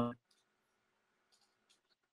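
The end of a man's sentence, then near silence with a few faint, sharp clicks at uneven intervals over a faint steady hum.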